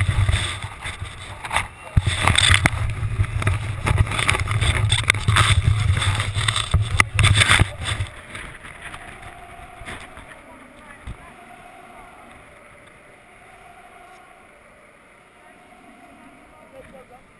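Cloth rubbing and knocking against the camera's microphone: a loud rumble full of clicks and knocks for about eight seconds, then it drops away to a low, muffled background.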